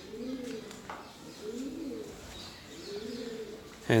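A pigeon cooing: three low coos, each rising then falling, about a second and a half apart.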